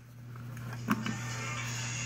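A single light click about a second in, as the metal desk stapler and the stapled paper plate are handled after stapling, over a steady low hum.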